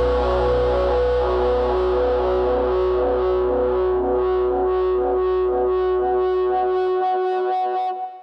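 Rock band's closing chord ringing out on distorted electric guitar through effects, with a pulsing about twice a second, over a deep low note that fades away shortly before the end.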